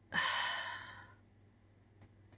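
A woman's sigh: one breathy exhale about a second long that fades away.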